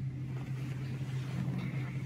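Steady low hum with a faint hiss over it.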